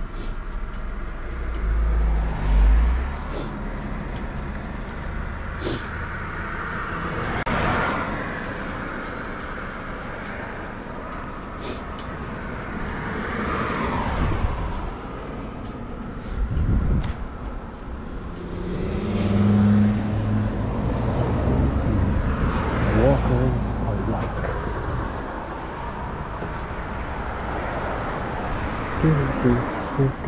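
Road traffic passing: cars go by one after another, each swelling and fading, with a louder passing vehicle and its engine hum about two-thirds of the way in.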